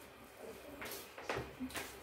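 Quiet chewing of a bite of creamy corn cake, with a few soft mouth clicks.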